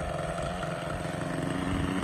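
Raptor 30 RC helicopter's small two-stroke glow engine running steadily on the ground, freshly started.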